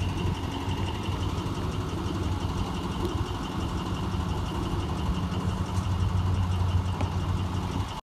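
Yellow conventional school bus's engine running steadily at low speed as the bus drives slowly past close by.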